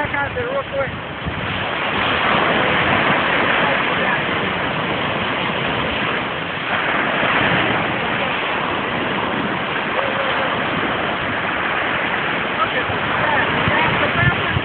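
Ocean surf washing onto the beach, a steady rush of noise.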